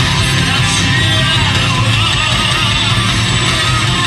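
A heavy metal band playing live through a festival PA: electric guitars, bass, keyboards and drums in a steady, dense wall of sound, recorded from within the crowd in front of the stage.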